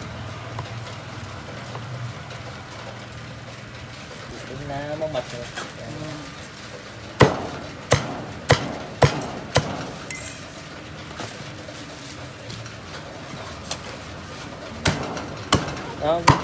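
A cleaver chopping through a roast duck on a thick wooden chopping block. There is a run of five sharp chops about half a second apart midway through, then two more near the end.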